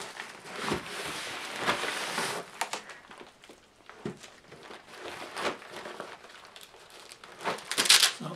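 Bubble wrap and plastic packaging crinkling as it is handled, loudest and densest in the first couple of seconds. After that come lighter rustles of fabric and packaging with a few short handling knocks, busier again near the end.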